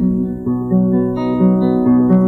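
Fingerpicked acoustic guitar playing an instrumental passage, with notes changing about every half second over a low held bass note.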